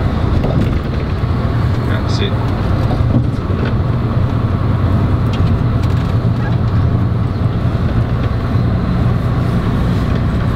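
Steady road noise of a moving vehicle at highway speed, heard from inside the cabin: a constant low hum with tyre and wind rush over it.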